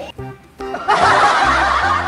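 Background music with a steady bass beat; about a second in, loud laughter comes in over it.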